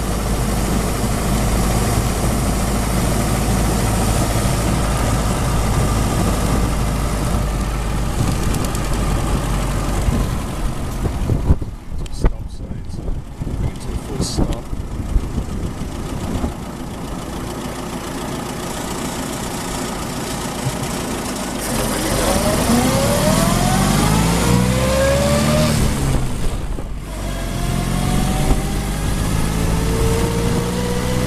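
1924 Bullnose Morris Cowley's four-cylinder side-valve engine running on the move, with wind and road noise in the open car. About twelve seconds in the engine note drops away for a few seconds. From about twenty-two seconds the pitch rises as the car accelerates, breaks briefly near twenty-seven seconds at a gear change, and rises again near the end.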